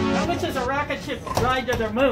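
The tail of an electronic intro track with a drum beat fades out in the first half-second. A voice follows, with strongly rising and falling pitch, in two drawn-out phrases.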